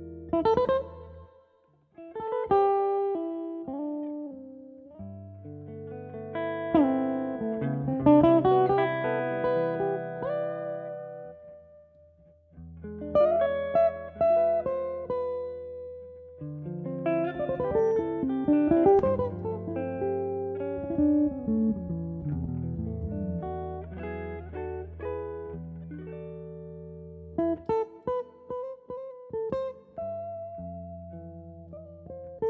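Instrumental music: plucked guitar notes and melodic runs over long held low notes. It falls away briefly twice and ends with a run of short, clipped notes.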